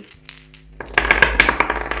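Soft background music, then about a second in a handful of small dice tipped from a plastic bag clatter onto the table in a quick, dense run of clicks.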